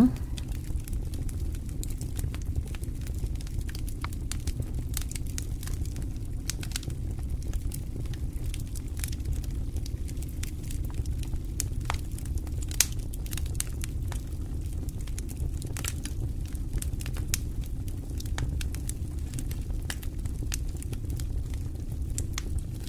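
Charcoal burner under a pot of dry-roasting maize flour crackling: scattered sharp ticks and crackles over a steady low rumble.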